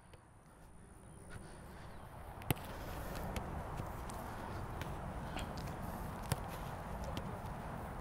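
Soccer balls being kicked on grass during a passing drill: several sharp thuds, the loudest about two and a half seconds in, over a steady low outdoor rush that fades in over the first couple of seconds.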